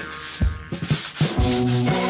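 Background music with held notes and a few sharp hits, over the rubbing, scrubbing sound of a mop worked across the floor.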